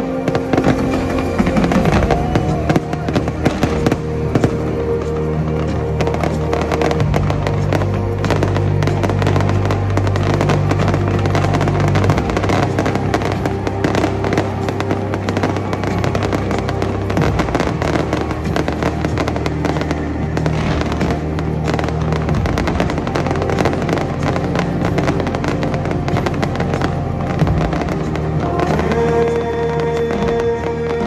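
Fireworks bursting and crackling in rapid, dense succession, over loud music with long held notes.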